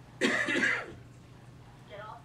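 A person gives a single loud throat-clearing cough that lasts under a second, a moment after the start.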